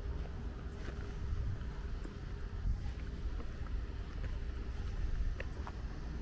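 Outdoor ambience dominated by a low, fluctuating rumble of wind buffeting the microphone, with a faint steady hum underneath and a few light clicks near the end.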